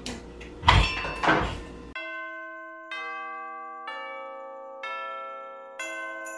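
Rustling of artificial Christmas tree branches, with two loud knocks, as a tree section is handled. About two seconds in, this gives way to background music of bell-like notes, struck about once a second, each ringing out.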